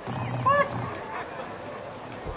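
German shepherd giving one short, high-pitched yelp about half a second in.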